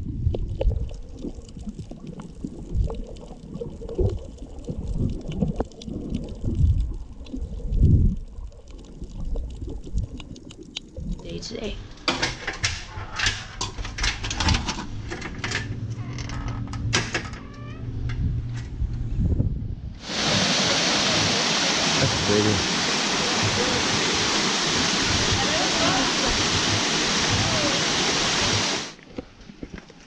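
Muffled underwater sloshing and bubbling heard through an action camera as a snorkeler swims. About eleven seconds in this gives way to a run of sharp clicks and taps. From about twenty seconds a steady, loud rushing of wind on the microphone takes over until just before the end.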